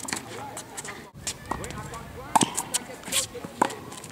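Tennis rally on an outdoor hard court: several sharp pops of racquet strings hitting the ball and the ball bouncing, with scuffing footsteps, after a brief break in the sound about a second in.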